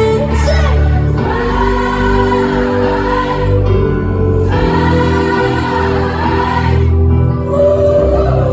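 Live pop song with band accompaniment and long held sung notes from several voices together, in two phrases with short breaks between them.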